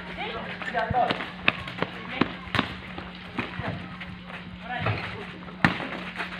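Basketball game on an outdoor concrete court: about six sharp thuds from the ball bouncing and players running, the loudest near the end, over scattered voices and a steady low hum.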